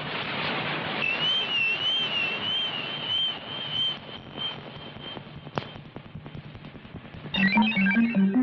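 Electronic sci-fi sound effect over a hissing background: a high warbling tone that wavers up and down, then settles to a steady tone and fades out. Near the end, synthesizer music with a pulsing bass line begins.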